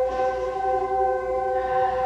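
Slow ambient background music: a sustained chord of steady tones held without a beat, the soft drone typically played under a hypnotic relaxation induction.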